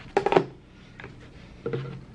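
A kitchen knife clattering down onto a granite board, a quick cluster of sharp knocks near the start. A faint tap about a second in and a soft knock near the end follow as paper towel rolls are handled on the board.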